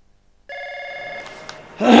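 Push-button desk telephone ringing, a steady electronic ring that starts about half a second in and sounds for under a second. Near the end a man answers with 'hello'.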